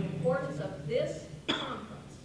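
A woman speaking into a lectern microphone, with a short, sharp cough about one and a half seconds in.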